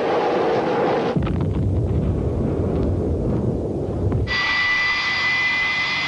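Aircraft noise in three parts: a rushing roar for about a second, then a low rumble for about three seconds, then a steady high-pitched whine from about four seconds in.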